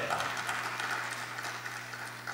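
Light, scattered applause from a congregation, fading away, over a steady low hum.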